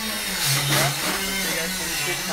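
A power tool or shop machine running steadily, its motor tone switching back and forth between a higher and a lower pitch, with a brief hiss about half a second in.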